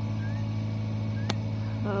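A steady low machine hum, with faint short rising chirps about once a second and a single sharp click just past halfway.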